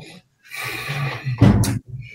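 A man's breathy, wordless vocal sound, a drawn-out exhale or hum while thinking, lasting about a second and loudest near its end.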